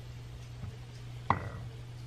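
Frothed milk being poured from a milk frother jug into a ceramic mug, mostly quiet. A single sharp clink with a brief ring comes about a second and a quarter in. A steady low hum runs underneath.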